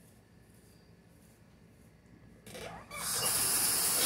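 Near quiet for the first two and a half seconds, then a sink tap is turned on and water runs steadily from it with a loud hiss.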